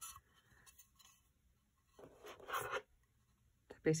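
Faint rubbing and scraping as a glazed earthenware serving tray is handled and turned over on a wooden table, with a short louder burst about two seconds in.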